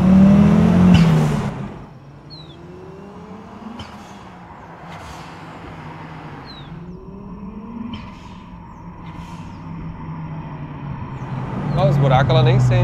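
Audi RS2's turbocharged inline five-cylinder engine pulling hard under acceleration, heard loud from inside the cabin with its pitch rising, cutting off after about two seconds. Then a much quieter stretch of distant engine sound as the car approaches along the road, growing louder again near the end.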